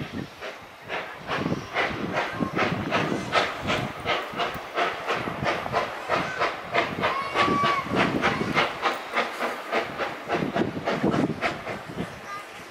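Er-class 0-10-0 steam locomotive approaching under steam, its exhaust chuffing in an even beat of about three a second. A brief steady whistle note sounds a little past the middle.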